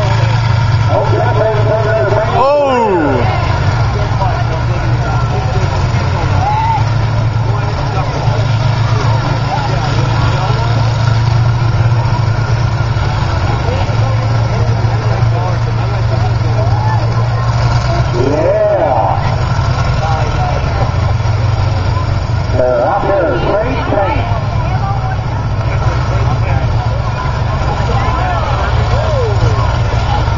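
Engines of several combine harvesters in a demolition derby running steadily together, with voices and shouts rising over them a few times.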